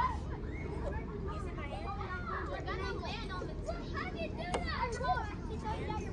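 Children playing on a playground: many high voices calling and chattering over one another at a distance, with no single clear talker.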